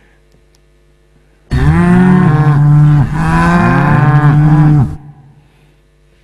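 Cow mooing twice, a recorded sound effect. It is loud and starts about a second and a half in, with two long moos back to back.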